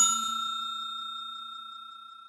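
Notification-bell ding sound effect: one struck chime that rings out and fades steadily over about two seconds.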